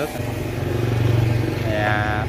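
A 2 HP screw press running, a steady low hum of its motor and drive that comes up just after the start, while it squeezes ground pennywort pulp.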